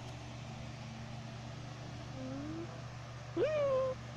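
A small animal's call, twice: a faint short rising call about two seconds in, then a louder one near the end that rises sharply and holds briefly before stopping.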